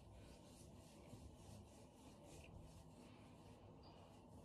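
Very faint, irregular rubbing of fingers raking a leave-in cream through wet curly hair.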